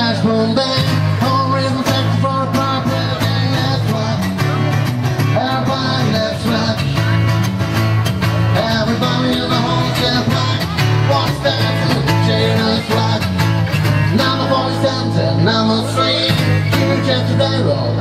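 Live acoustic rock-and-roll band playing an instrumental break between sung verses: strummed acoustic guitars over an upright double bass, with a steady driving beat.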